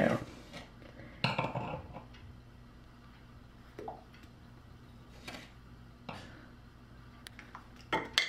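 Kitchenware being handled: a brief clatter about a second in, then a few faint knocks and clinks over a low steady hum.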